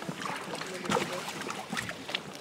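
Shallow lake water sloshing and splashing around a person in waders as he moves and settles into an inflatable float tube, with scattered short splashes.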